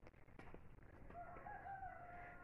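A faint, distant bird call: one long, held pitched call that begins about halfway through.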